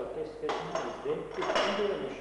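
A man's voice speaking, the words not made out.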